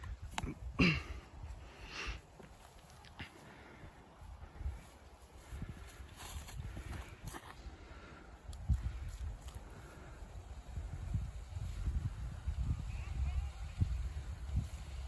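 A few sharp knocks in the first couple of seconds as a disc golf disc is thrown, then open-air ambience with wind rumbling on the microphone, louder in the second half.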